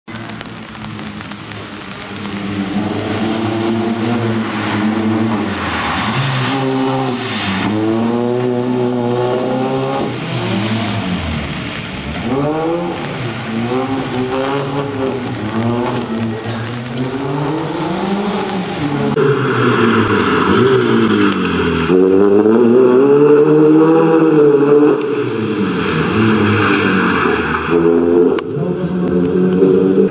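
Citroen C2 rally car's engine revving hard, its pitch climbing and dropping again and again every second or two as it is driven flat out on a stage. It is loudest in the second half.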